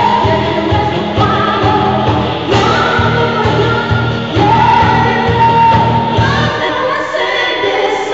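Live band playing an R&B song, a woman singing lead with backing vocals, including one long held note in the middle. Near the end the bass and drums drop out and the voices carry on.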